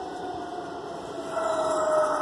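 A steady motor whine, slowly falling in pitch, with a second, higher tone joining about a second and a half in.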